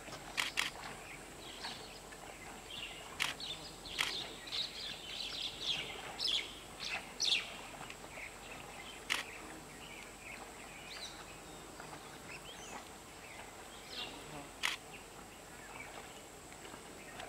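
Small birds chirping and calling, busiest in the first half, with a handful of sharp clicking notes, over a steady high-pitched hum.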